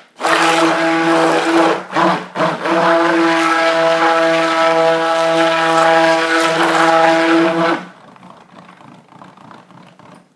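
Handheld stick blender running in thick cold-process soap batter: a steady motor hum, cut off briefly about two seconds in, then switched off about eight seconds in.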